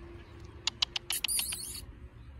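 A quick run of sharp, short, high-pitched kissing squeaks made with the lips to call puppies: about five separate smacks, then a brief cluster of squeaky, gliding kisses.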